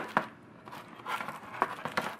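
Crisp, hard twice-baked biscotti slices being flipped by hand on a parchment-lined baking sheet: several short dry clicks and taps as the slices tip over and land, with a little crinkling of the parchment.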